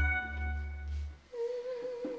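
A sustained music chord with low bass fades out. About a second and a half in, a single voice starts humming one held note.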